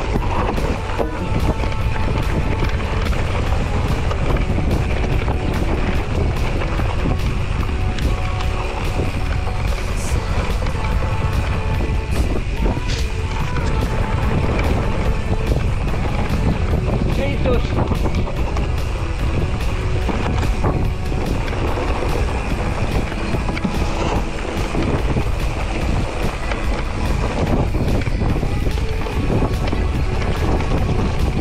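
Steady low rumble of wind on the microphone and a mountain bike rolling over a grassy dirt track.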